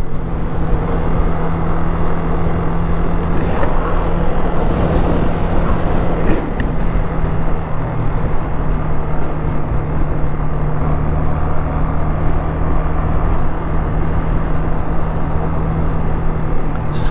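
Yamaha Fazer 250's single-cylinder engine running steadily while the motorcycle cruises, heard from the rider's position with steady road and wind noise.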